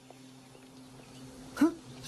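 A faint, steady low hum of a film's background sound, then one short, loud burst of a voice about one and a half seconds in.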